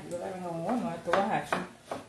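Kitchen knife cutting a tomato on a wooden cutting board: a few sharp knocks of the blade against the board.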